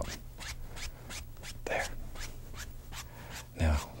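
Wide paintbrush stroked lightly back and forth over oil paint on canvas: a quick run of soft, scratchy bristle strokes, several a second.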